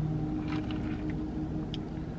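Steady low hum inside a car, its engine idling, with a few faint small ticks and rustles.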